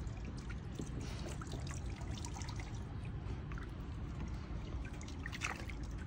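Water trickling and lapping faintly in a shallow plastic kiddie pool, over a low steady rumble.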